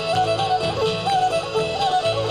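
Cajun/zydeco band playing an instrumental passage: fiddle and accordion carry a sliding melody over guitars, bass and a steady drum beat, with no vocals.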